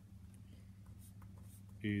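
A pen scratching faintly on paper in short, intermittent strokes over a steady low hum.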